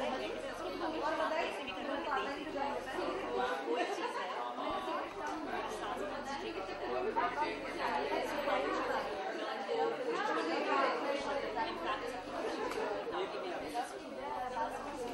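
A woman talking, with the chatter of a crowd behind her.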